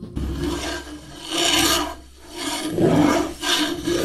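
A rasping, scraping noise that swells and fades about four times over a low steady hum.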